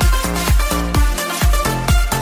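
Eurodisco dance music: a steady four-on-the-floor kick drum about twice a second, under a pulsing synth bass line and synthesizer chords.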